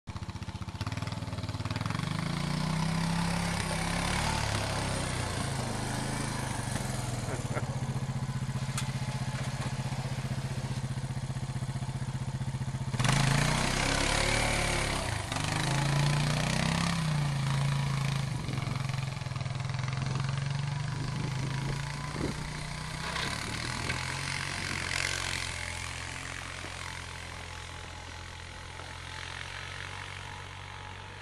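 ATV engine running while plowing snow with a front blade, its pitch rising and falling as the throttle opens and closes. A louder rush of noise comes in about 13 seconds in.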